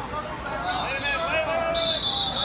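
Voices of spectators and coaches calling out in a busy tournament hall, with a referee's whistle starting near the end as a single high steady tone.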